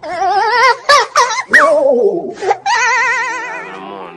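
Several wavering, bleat-like vocal cries with a fast wobble in pitch, the last one held for about a second near the end.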